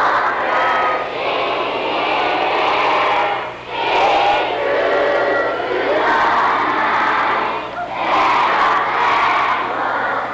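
A large group of schoolchildren singing together, in long phrases with short breaks between them.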